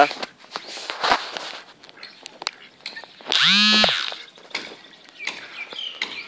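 Domestic ducks dabbling in shallow water, their bills making scattered short splashy clicks. About three and a half seconds in, one loud drawn-out quack lasts about half a second.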